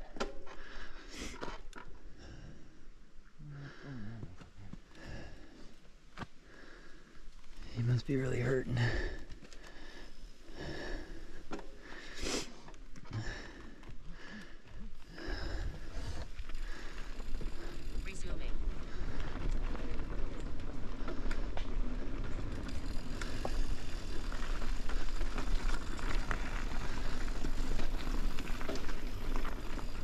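Mountain bike riding over a packed-dirt trail: tyres rolling on dirt, with scattered clicks and knocks from the bike over bumps. About halfway through, the riding noise turns steadier and louder as the bike picks up speed.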